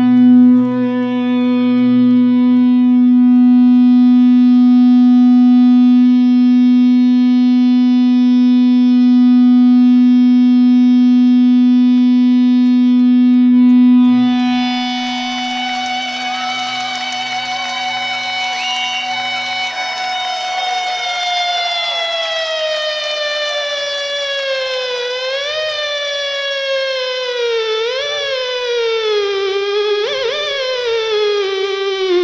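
Ibanez JEM electric guitar playing long sustained notes: a loud low note held for about fourteen seconds, then a high singing note that slowly sinks in pitch. Near the end the tremolo (whammy) bar is dipped and released several times, making the pitch swoop down and back.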